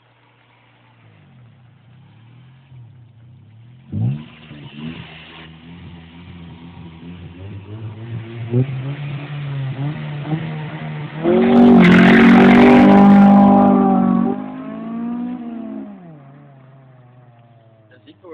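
Honda Civic Si's four-cylinder VTEC engine revved from idle: a sharp blip about four seconds in, then revs climbing over several seconds to a loud, held high-rev peak with a harsh rush of noise, before dropping back to idle near the end.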